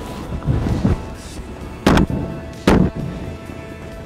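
Two shotgun shots, a little under a second apart, about halfway through.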